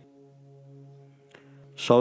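A faint, steady low drone with a few even overtones fills a pause in a man's speech. The speech resumes near the end.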